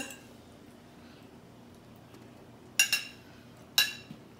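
A metal fork clinking against a plate twice, about a second apart, near the end.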